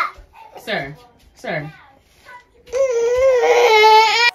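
Toddler's high-pitched wordless vocalizing: two short falling calls, then a long, wavering squeal near the end.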